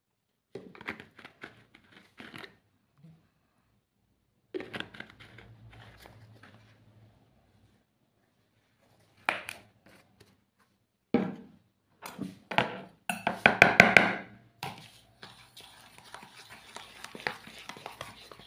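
Intermittent clatter and knocks of plastic bowls and utensils being handled, in short bursts with silent gaps between them. Near the end a fork scrapes and stirs steadily in a plastic bowl as sugar and oil are beaten together.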